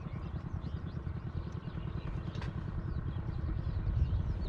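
A small engine running steadily with a fast low chug, likely the motor of a small boat. Many short, faint bird chirps sound over it.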